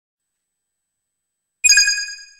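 Silence, then about one and a half seconds in a single bright electronic chime that rings and fades: the first beep of a video countdown sound effect, which goes on once a second.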